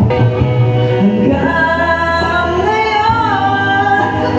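Karaoke: a man singing into a corded microphone over a music backing track. The singing comes back in about a second in, after a brief stretch of backing track alone.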